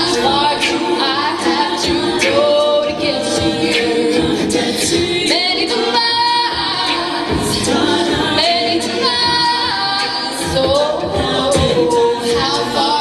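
Co-ed a cappella group singing a pop arrangement, a female lead voice over layered male and female backing vocals, with no instruments.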